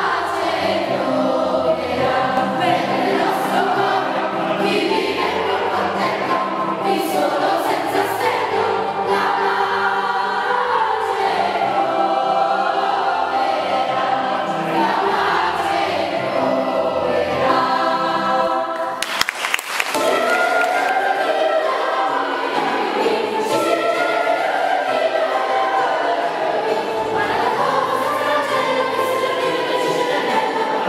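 Children's choir singing in unison and parts, a sustained melodic phrase, with a short break and a brief noise about two-thirds of the way through.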